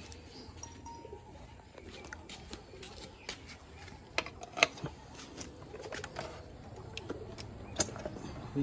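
Scattered light clicks and knocks from handling a Royal Enfield Continental GT 650's seat and side panel, the sharpest pair about four seconds in.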